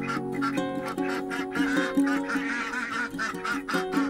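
Domestic waterfowl calling in a run of short, honking quacks through the middle, over background music with long held notes.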